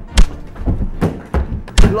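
Four heavy thuds in a staged fist fight, blows and bodies landing, the loudest about a quarter second in and another just before the end.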